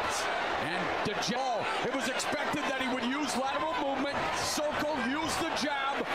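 Boxing broadcast audio: a man's voice commenting steadily over arena crowd noise, with a few short, sharp knocks.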